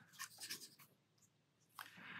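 Faint scratching of a small paintbrush on paper as it picks up paint, with a few light ticks in the first second and a short scrubbing sound near the end.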